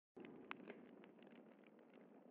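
Near silence: a faint crackling hiss with scattered small clicks, the quiet noise bed that opens a lofi chill track before the music comes in.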